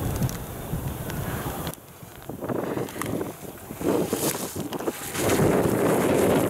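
Wind buffeting the microphone as the camera moves down the ski slope, cut off suddenly about two seconds in. Then ski edges scraping across hard snow in repeated surges, one per turn, the loudest near the end.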